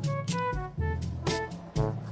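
Instrumental background music: a melody of short notes at changing pitches over a steady bass line.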